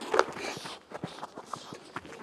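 Football boots on grass as goalkeepers push off from the ground and run: a quick, irregular patter of footsteps.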